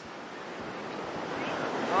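Sea surf washing onto a beach, a steady rush that swells gradually louder.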